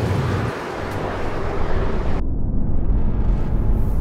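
Renault Mégane GT with its 1.6-litre turbo four-cylinder driving by, with engine and tyre noise. The noise cuts off suddenly about halfway through, leaving a low steady rumble.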